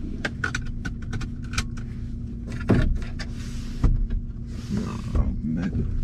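Car interior: a seat belt pulled across and buckled, with a string of small clicks and rattles, over the car's steady low hum. Later come a couple of thumps and two short swishes.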